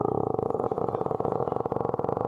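A man's voice holding a long, drawn-out rolled 'r', a rapid buzzing trill that starts abruptly and stays steady in pitch.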